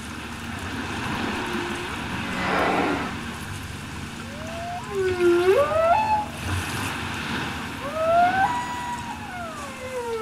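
Humpback whale calls over a steady water hiss. After a rushing burst about two and a half seconds in, a series of sliding moans starts about five seconds in, each swooping down and up in pitch.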